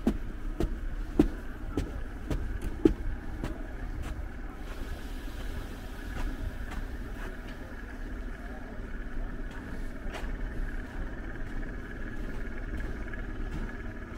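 Footsteps in snow at a steady walking pace of about two steps a second, sharp and loud for the first few seconds, then softer. Underneath runs a constant low rumble with a steady high hum.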